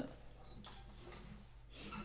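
Quiet pause with a few faint clicks and light rustling: an acoustic guitar and its pick being handled and brought into playing position.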